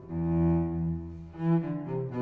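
Solo cello, bowed, playing a slow classical melody: one note held for about a second and a half, then the next notes begin near the end.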